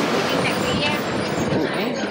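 City street noise: a steady rush of passing traffic with people talking in the background.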